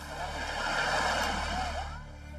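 Sea water splashing and washing around a swimmer, heard as a steady rush of noise that swells and then fades.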